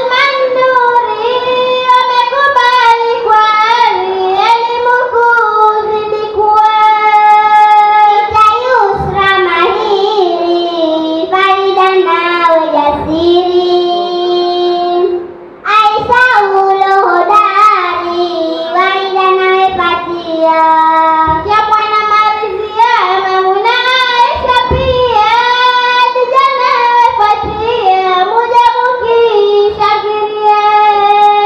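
Young girls singing a Swahili utenzi (verse poem) solo into a microphone, one voice at a time, with long held and wavering notes. The singing breaks briefly about halfway through as the second girl takes over.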